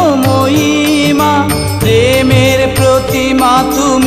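Bengali devotional song in praise of Sati Ma: a melody with wavering, ornamented pitch over a steady drum beat.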